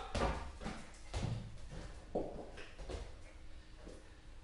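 Faint scattered knocks and taps on a tiled floor, roughly one a second, from a ball game with a small dog.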